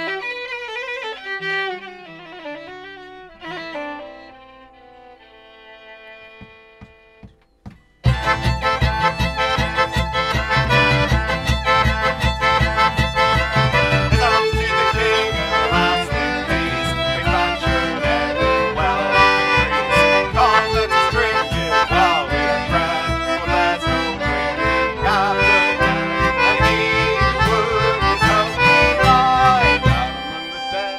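Bowed strings (fiddle and viola) play a slow, quiet introduction that fades away. About eight seconds in, the full folk band comes in loudly on a traditional English tune: concertina, fiddle, viola and acoustic guitar over a hand drum keeping a steady beat.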